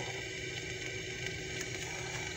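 Faint steady background hum and hiss, a pause with no distinct sound event.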